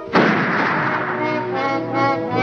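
A cartoon rifle shot: one loud bang just after the start, its noise dying away over about a second. The gun's barrel is bent back on the shooter, so the shot backfires. Brass-led cartoon orchestra music plays on underneath.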